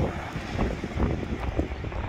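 Strong wind buffeting the microphone, an uneven rumbling noise heaviest in the low end.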